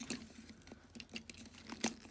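Faint clicks and rustles of plastic as hands handle a Transformers Animated Blitzwing action figure, with one sharper click near the end.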